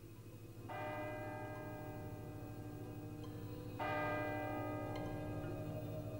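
A bell tolling twice, about three seconds apart, each stroke ringing on and slowly fading over a low steady hum.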